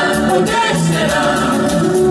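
Live band playing Latin dance music, with a woman singing into an amplified microphone.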